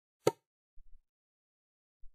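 A single sharp computer-mouse click about a quarter second in, followed by a few faint low thumps.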